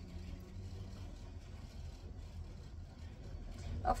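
A low, steady background rumble with no other clear event. A woman's voice starts a word right at the end.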